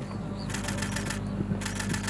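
Steady low electrical hum from an open loudspeaker system. Over it come two short runs of rapid fluttering clicks, about half a second and a second and a half in.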